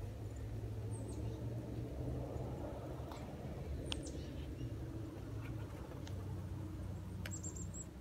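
Outdoor air during snowfall: a steady low rumble, like wind on a phone microphone, with a few short high chirps of small birds about a second in, near the middle, and a quick run of them near the end.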